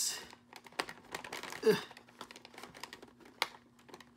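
Light, irregular clicks and crinkles of a plastic blister pack as the ties and tabs holding an action figure are pried at with a small hand tool, with a sharper click near the end.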